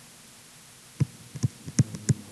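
Stylus pen tapping on a writing surface as numbers are handwritten: quiet for about a second, then three sharp taps about 0.4 s apart.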